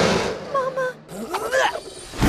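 Cartoon creature cries: a rush of noise fading at the start, two short held calls about half a second in, then a rising-and-falling squeal.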